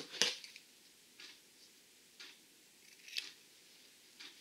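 Four short, crisp rustles about a second apart, the loudest just after the start, as hands handle a strip of black self-fusing repair tape and pick up a pair of scissors near the end.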